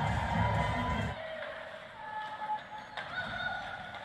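Arena music with a heavy pulsing beat plays over the ice-rink sound after a goal and cuts off abruptly about a second in. After that comes a quieter arena background with a few short, high steady tones.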